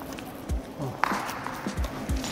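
Footsteps thudding on a badminton court floor, with one sharp racket-on-shuttlecock hit about a second in as a net shot is played.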